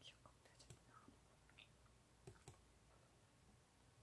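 Near silence: room tone with a few faint, short clicks in the first two and a half seconds.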